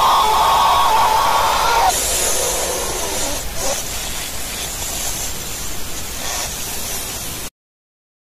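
Harsh, distorted spray-like hissing from a cartoon logo's sound effect played backwards and heavily edited. A strong middle-pitched band sits under the hiss for about the first two seconds, then a thinner hiss runs on and cuts off suddenly near the end.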